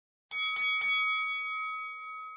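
A bell-like chime struck three times in quick succession about a third of a second in, its tones ringing on and slowly fading: an intro sting at the opening of the video.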